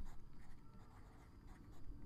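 Faint scratching and tapping of a stylus writing a word on a drawing tablet.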